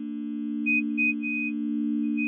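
A steady electronic drone that swells slowly, with three short high beeps over it about a second in, the last one longer.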